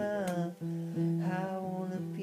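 Acoustic guitar being played, with a voice humming or singing wordlessly over it in long held notes that bend in pitch. A strum lands about a quarter second in.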